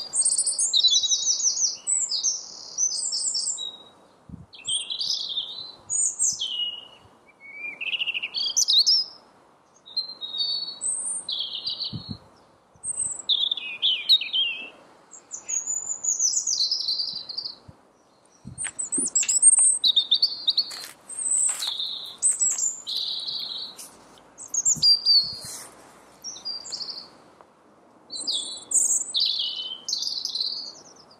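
A songbird singing a long run of varied, high chirping phrases, each a second or two long with short pauses between. Faint steady background noise runs underneath.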